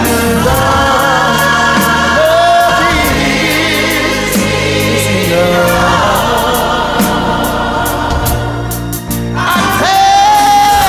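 Gospel-soul song: voices singing long, wavering held notes over steady bass notes and a regular cymbal beat.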